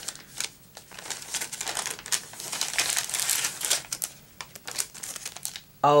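Kraft paper bag and clear cellophane packet crinkling and crackling as they are handled and opened, a dense run of small sharp crackles that is busiest in the middle.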